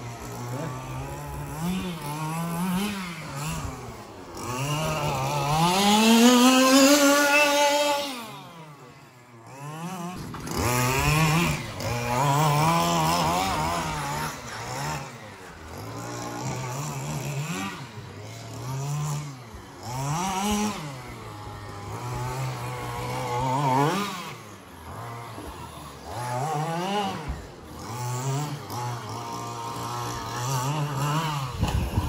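FG Marder RC buggy's 25 cc two-stroke petrol engine revving up and dropping back again and again as the buggy is driven. The loudest moment is a long rise in pitch about six seconds in.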